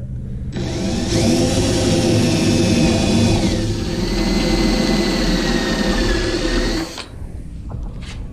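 Electric drill running steadily with an ordinary twist bit, boring through a board's cured top coat and the protective plastic cap over a threaded insert. It starts about half a second in, its whine drops in pitch about halfway as the bit loads up, and it stops about seven seconds in.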